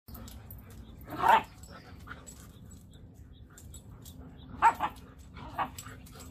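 Airedale Terrier barking: one bark about a second in, then a quick pair of barks near the end and one more shortly after.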